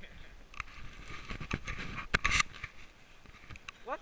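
Scattered sharp clicks and scraping close to the microphone, with a short stretch of rustling about a second in.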